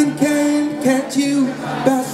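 Live gospel song: a male lead singer sings a slow line of held notes over acoustic guitar and band.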